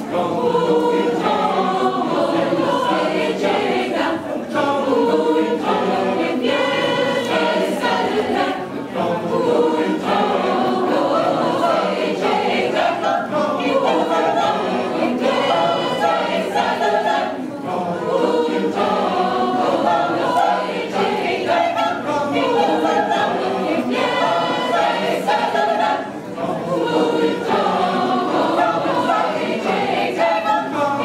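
A large mixed choir of men's and women's voices sings a part-song without accompaniment. The singing breaks briefly between phrases about every nine seconds.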